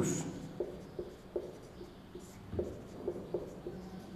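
Marker pen writing on a whiteboard: a series of short, separate strokes as the words are written out.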